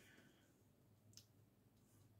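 Near silence: room tone, with one faint, short click just over a second in.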